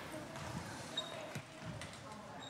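Children's footsteps in a church sanctuary: a few soft knocks and shuffling over faint murmuring from the congregation.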